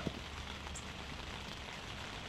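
Steady rain falling, a constant even hiss with no separate drops standing out.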